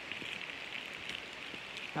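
Faint, steady rustling and crackling of a paper instruction leaflet being handled close to the microphone.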